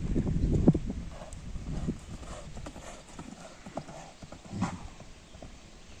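Horse's hoofbeats cantering on a sand arena, loudest in the first second as the horse passes close, then quieter as it moves away.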